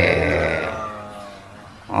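An elderly man's drawn-out, wordless vocal sound: one held voice that slides slowly down in pitch and fades out over about a second and a half.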